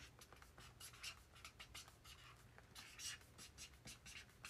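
Faint, irregular scratching and light tapping close to the microphone, a few small strokes each second.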